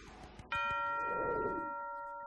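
A single bell-like ding struck about half a second in, ringing with several tones at once and fading slowly. Before it, the tail of a noisy whoosh dies away.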